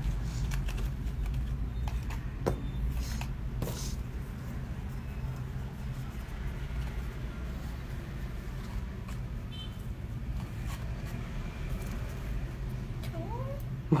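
A steady low hum with a few faint clicks and rustles as cigarettes are pulled out of a cardboard cigarette pack.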